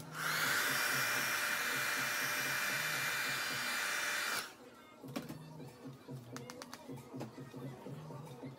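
Handheld hair blow dryer running on the hair with a steady high motor whine, switched on at the start and cut off after about four seconds.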